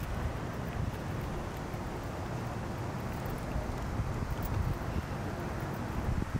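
Wind on the camera's microphone: a steady low rumble with a light hiss above it.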